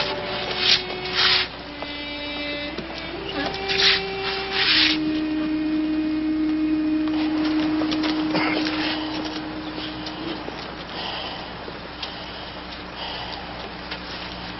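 Film soundtrack: a series of steady electronic tones stepping between pitches, the last held low for about five seconds, with four short loud bursts of hiss in the first five seconds; faint room murmur follows.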